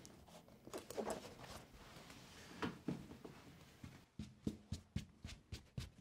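Faint close-miked handling: scissors going into a leather apron pocket and other items rustling, then a run of short soft taps about four a second over the last two seconds.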